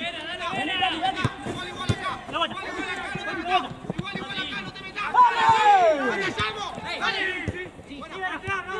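Several people shouting and calling out at once during a football match, voices overlapping, with one loud, long shout falling in pitch about five seconds in.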